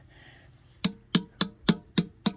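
Hand tapping on the chrome-plated plastic cladding of a 2010 GMC Sierra wheel spoke: five sharp, evenly spaced taps starting just under a second in, each with a brief ring. The tapping shows that the cracked outer layer is plastic, a cosmetic crack and not one in the rim itself.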